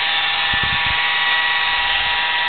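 A steady high-pitched whine over hiss, like a small motor running, with a brief low rumble about half a second in.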